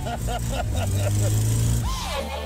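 Car engine heard from inside the cabin, running at steady revs while the car slides on snow, with men laughing over it.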